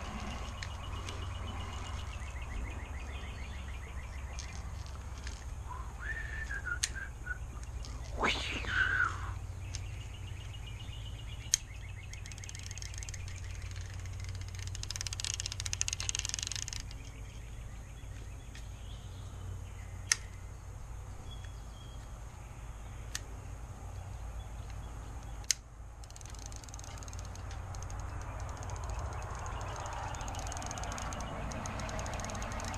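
Outdoor background with a steady low rumble. A bird calls twice in quick succession about six to nine seconds in, the loudest sound here. A few single sharp clicks from handling a small spinning reel are scattered through the rest.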